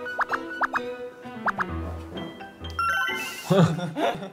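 Cartoon gulp sound effect, a handful of quick rising 'bloop' tones, played over light background music. A burst of laughter and voices comes near the end.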